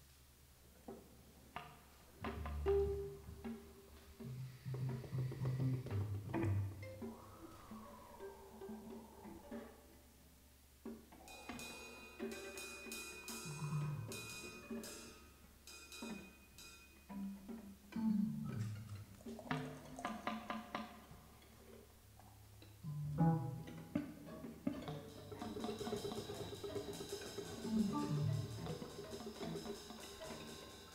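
Live ensemble performing experimental music from a graphic score: sparse, scattered short notes and sharp percussive knocks and clicks with silences between them. A thin high tone is held for several seconds in the middle, and the texture grows denser and higher near the end.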